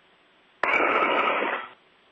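A burst of radio static lasting about a second, starting abruptly partway in and fading out, over a faint steady hiss on the space-to-ground radio link.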